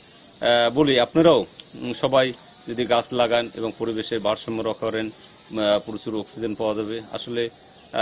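Steady high-pitched insect chorus that runs without a break, with a man talking over it.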